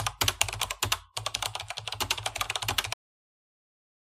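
Computer keyboard typing: rapid key clicks in two runs with a short pause about a second in, stopping suddenly about three seconds in.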